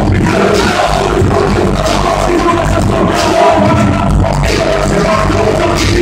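Live hip hop played loud through a club PA, heard from within the audience: a drum beat with heavy bass and a rapper's voice over it, with crowd noise close by.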